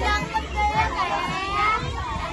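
A group of children talking and calling out over one another in lively chatter.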